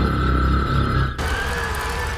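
Eerie horror-film score: a sustained high tone held over a deep drone, changing about a second in to a tone that slowly rises in pitch.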